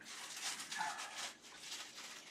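Soft rustling and crinkling of a plastic mailing bag as it is handled and cut open with scissors.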